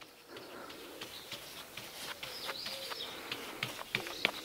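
Birds chirping faintly, with soft, irregular scratches and ticks of a wide paintbrush working Mod Podge over the resin drills of a diamond painting.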